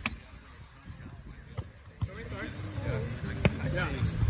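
Sharp smacks of a hand on a volleyball: four slaps, at the very start, about one and a half and two seconds in, and near the end, as the player handles the ball before a serve. Voices talk faintly in the second half.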